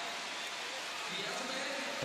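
Swimming arena crowd cheering as a steady din through the closing length of a race.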